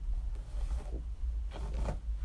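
A hairbrush drawn through the long hair of a mannequin head, two brushing strokes about a second apart, over a steady low hum.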